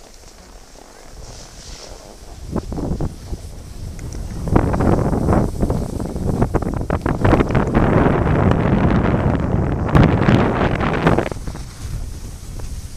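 Wind buffeting the microphone of a camera moving down a ski slope: quiet at first, building from about two seconds in, strongest from about four and a half seconds until it drops off near eleven seconds.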